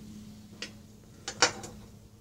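Metal pruning shears clicking and clattering against a stone slab as they are handled and put down, a few sharp clicks with the loudest about a second and a half in. A faint steady low hum runs underneath.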